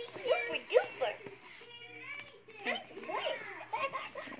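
Children's voices: short bits of unclear talk and vocal sounds, with a pause in the middle.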